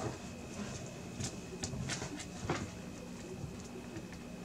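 A few light clicks and rustles as a bundle of PCIe power cables and their plastic connectors is handled and pushed into a GPU breakout board, over a faint steady hum and a thin high whine.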